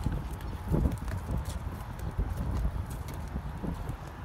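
Footsteps on wooden pier boards: a run of irregular soft thumps as people walk along the deck.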